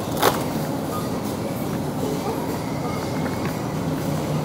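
Shopping trolley rolling over a tiled supermarket floor with a steady rumble, and one sharp clack just after the start.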